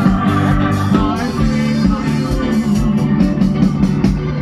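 A live band playing a Konkani dance song, with drums keeping a steady beat under guitar and keyboard and some singing.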